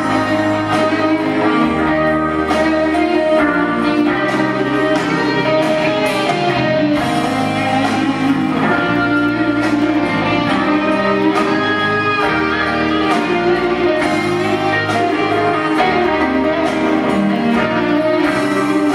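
A rock band playing live with an electric guitar lead out front: long held notes that bend and waver, over a bass line that changes note every second or two.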